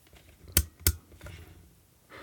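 Two sharp clicks about a third of a second apart from a digital multimeter's rotary range switch being turned to the 20 A DC current setting.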